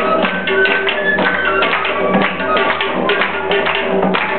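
Live Balti folk music: a stepping melodic line over a sustained drone, with rapid rhythmic hand-clapping from the seated listeners.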